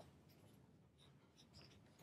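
Near silence: room tone with a few faint small rustles, as of paper being handled.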